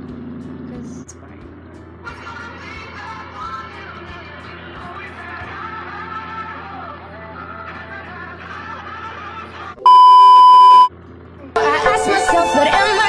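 A loud, steady electronic beep tone lasting about a second, then music starting abruptly just before the end.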